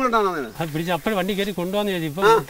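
Speech only: a man talking in Malayalam without a pause.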